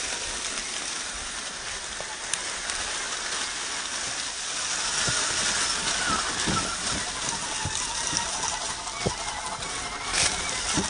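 Dry leaves crackling and rustling under the tyres of a 1/10-scale RC rock crawler as it drives through deep leaf litter. A faint whine from its brushed electric motor comes through midway, and dull knocks follow in the second half.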